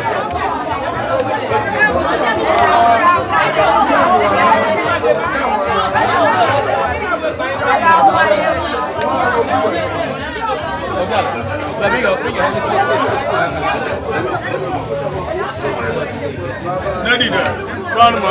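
Speech only: several people talking over one another, crowd chatter.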